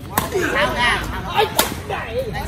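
Badminton rackets striking a shuttlecock twice, two sharp cracks about a second and a half apart, with voices calling out between the hits.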